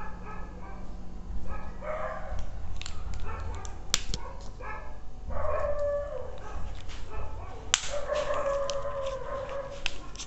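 Several drawn-out, pitched animal calls, the longest about two seconds near the end and falling slightly in pitch, with a few sharp clicks in between.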